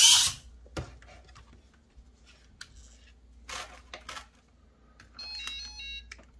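Handling noise from a hopping RC lowrider chassis as it is switched off for a battery change: a sharp rustle at the start, then scattered clicks and short scrapes. Near the end comes a quick run of electronic beeps that step between several pitches.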